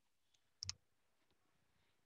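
Near silence, broken by a single brief click about two-thirds of a second in.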